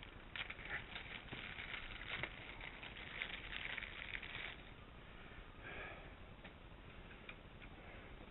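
Small clear plastic zip-lock bags crinkling and rustling as they are handled, most of it over the first four or five seconds, with a brief crinkle again near six seconds.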